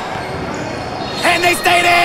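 Spectators' voices and a basketball being dribbled on a gym floor, heard through a brief gap in the hip-hop backing track; the rap music comes back in a little over a second in.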